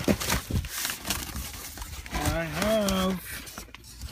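Cardboard boxes and plastic-wrapped fireworks packs being shifted and rummaged through by hand, a run of sharp knocks and crinkling rustles, with a short drawn-out vocal 'uhh' about two seconds in.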